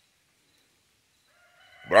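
Near silence, then a rooster crowing faintly, starting about a second and a half in and running under the start of a man's speech.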